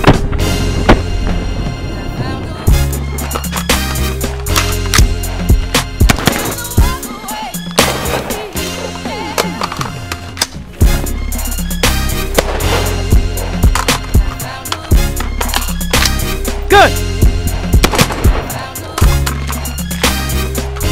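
Backing music with a heavy bass line and beat, over which an AR-15 rifle fires sharp shots at irregular intervals.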